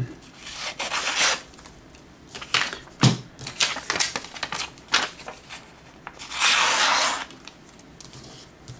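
Glossy magazine pages and perfume sample cards being flipped and handled, a series of short paper rustles and slides with a light knock on the tabletop about three seconds in and a longer rustle of about a second near the end.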